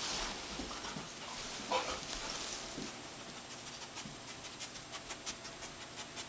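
A bed bug detection dog breathing hard as it searches, panting and sniffing, with a run of short, quick sniffs near the end.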